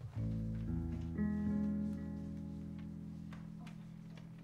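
Guitar plucking three low notes in quick succession, about half a second apart, building a chord that then rings and slowly dies away.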